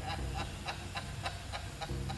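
A man laughing in quick, evenly repeated 'ha-ha' pulses, about six a second.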